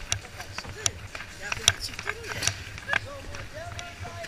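Ice skate blades scraping and clicking on rink ice in a string of short, sharp strokes, the loudest about 1.7 s in, with voices chattering in the background.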